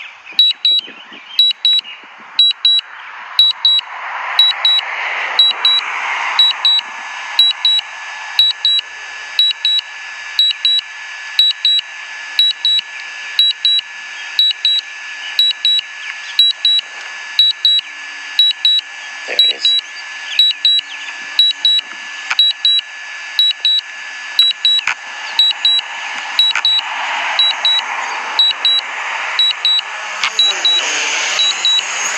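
DJI Mavic Pro's critical low-battery alarm: short high beeps in pairs, repeating about once a second without let-up while the drone lands on nearly flat battery. A rushing background noise builds up behind the beeps a few seconds in.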